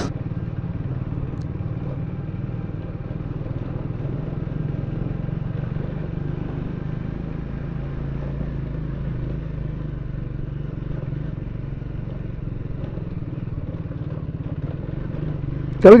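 Motorcycle engine running steadily while riding slowly over a rough gravel track, a low, even drone with no change in revs.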